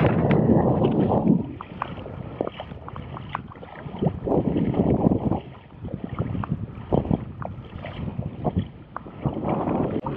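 Wind gusting on the microphone, strongest at the start and again about four seconds in, with scattered small splashes and knocks from someone wading through ankle-deep water while towing a plastic kayak.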